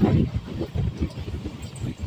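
Passenger train in motion, heard from a carriage window: an uneven low rumble with irregular buffeting, loudest at the start.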